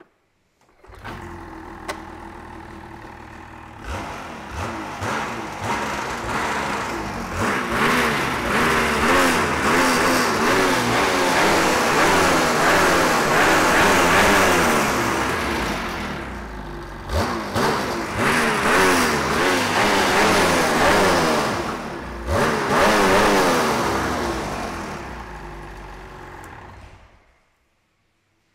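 Ski-Doo Summit 850X G4 snowmobile's 850 E-TEC two-stroke twin started and revved hard in long pulls on a stand, the track spinning free as the clutches shift. It runs lower at first, holds high revs through three surges, then winds down and shuts off near the end. No rubbing of the clutch against the new sealed clutch cover.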